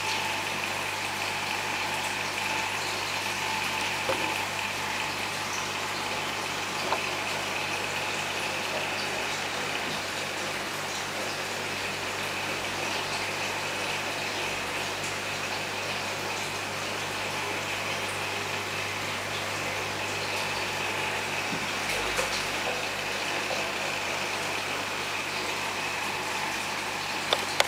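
Steady electrical hum and water noise from aquarium equipment running, with a few faint taps.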